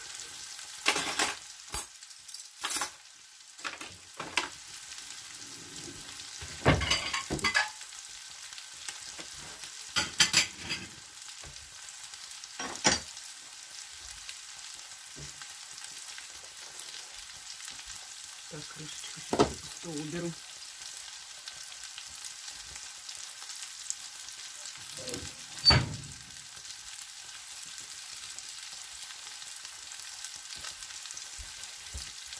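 Onion and carrot frying in a pan, a steady sizzle throughout. Occasional sharp clatters and knocks ring out over it, about eight in all.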